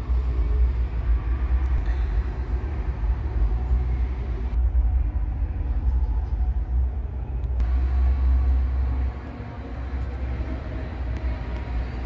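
Loud, low outdoor rumble of city street noise, like passing traffic, with a noisy hiss above it. The sound changes abruptly a few times, and the rumble drops in level about nine seconds in.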